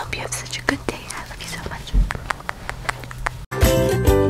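A person whispering close to the microphone, with small clicks over a steady low hum. About three and a half seconds in it cuts abruptly to background music with a steady beat and jingling.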